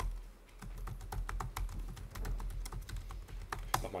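Typing on a computer keyboard: an irregular run of quick key clicks, several a second, as a terminal command is entered.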